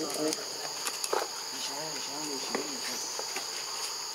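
A baby macaque giving short, arching whimper calls: a couple at the start and a run of about four around the middle, over a steady high-pitched drone of insects.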